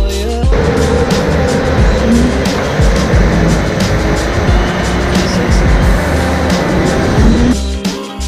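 Go-kart driving hard around an indoor concrete track, its motor and tyres making a loud, dense rushing noise with brief rising whines. Backing music cuts out about half a second in and comes back near the end.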